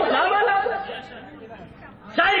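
A man's voice speaking, then falling away into a quieter lull in the second half.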